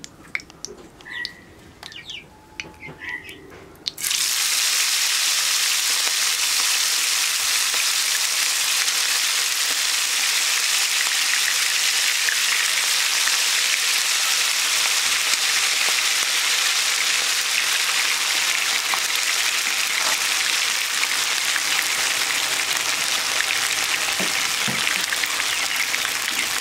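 Green mussels and cauliflower in masala coating go into hot oil about four seconds in. The oil breaks at once into a loud, steady sizzle of deep-frying that continues to the end; before that the pan is nearly quiet.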